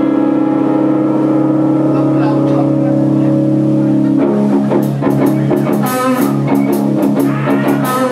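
Live rock band: electric guitar holding sustained amplified chords, then drums and cymbals come in about four and a half seconds in and the band plays on.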